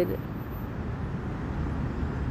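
Steady low rumble of street traffic in the background.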